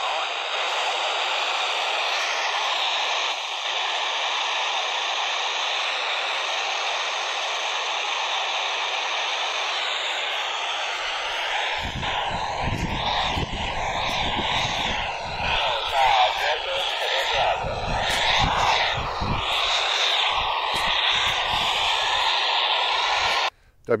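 FM receiver static from a Kenwood TH-D72A handheld radio with its squelch open on the SO-50 satellite downlink: a steady hiss. About halfway through it turns choppy, with low rumbles and faint broken voice-like fragments as the weak signal fades in and out, the satellite path being blocked by a house. It cuts off suddenly just before the end as the transmitter is keyed.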